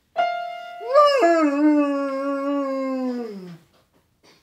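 A piano key struck by the dog's paw rings out, and about a second in the dog howls along: one long howl that rises briefly, holds steady, then slides down in pitch and stops near the end.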